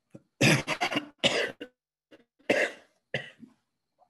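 An elderly man's coughing fit: a quick run of coughs about half a second in, then several more coughs over the next few seconds, the last one weaker.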